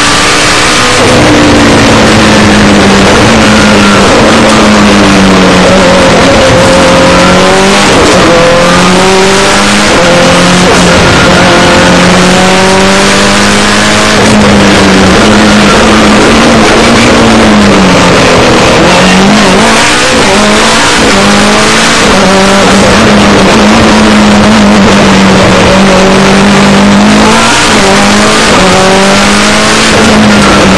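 Rally car engine heard from inside the stripped, roll-caged cabin, running hard and loud. Its pitch climbs and drops again and again as the driver accelerates, shifts gear and lifts off for corners.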